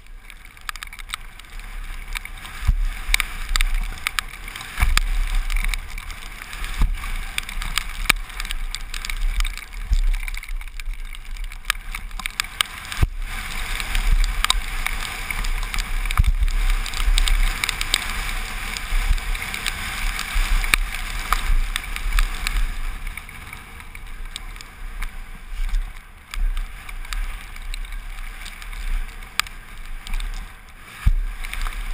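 Mountain bike descending a rough gravel and rock downhill trail at speed: continuous rush of wind over the helmet microphone and tyres rolling over loose gravel, with frequent sharp rattles and knocks from the bike over the rough ground.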